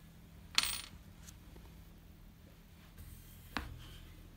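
A small steel hex key clinks once against metal about half a second in, with a short bright ring, then gives a fainter click near the end.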